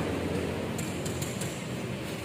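Steady background hiss and hum of room noise, with a few faint clicks about a second in.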